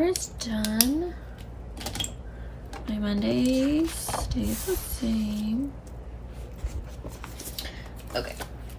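A woman humming or making a few wordless vocal sounds, short sliding notes in the first six seconds, over the rustle of paper and light clicks as loose planner pages are moved and handled.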